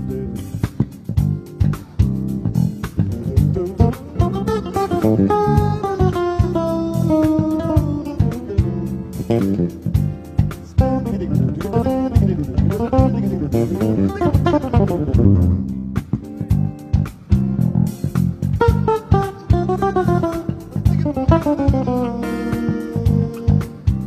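Two electric bass guitars, one a six-string, playing together live: a low groove under a higher melodic line whose notes slide up and down in pitch, with many sharp plucked attacks.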